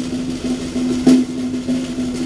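Snare drum playing a continuous roll, with a loud accented stroke about a second in.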